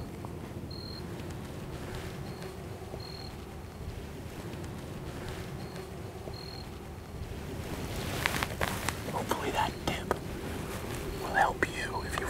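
Quiet outdoor ambience with a steady low rumble and a few short, high peeps; from about eight seconds in, a run of close clicks and rustles, with faint whispering near the end.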